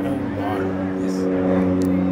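A steady low drone of several held tones, unchanging in pitch, with faint voices murmuring under it about half a second in.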